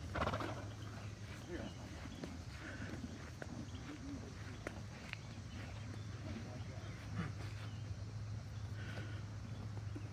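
Horses and a donkey eating corn husks held out to them over a fence: husks rustling and being chewed, with a short loud burst right at the start and faint scattered rustles and clicks after it.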